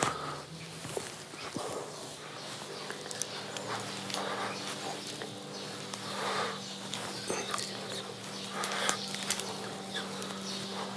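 A man breathing hard in short forceful puffs, one every second or two, as he lifts a heavy dumbbell, over a steady low hum. A light knock or two about a second in as the weight is picked up.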